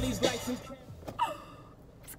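Music dying away in the first half-second, then a woman's short gasp about a second in, its pitch falling.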